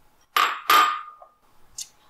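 Two sharp clinks of glass prep bowls being handled against hard kitchen surfaces, the second ringing briefly; a faint tick follows near the end.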